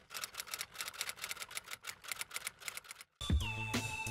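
Rapid, uneven clicking of typewriter keys, about five or six strokes a second, laid over a text title card. Near the end the clicking stops and music with steady tones and a low bass comes in.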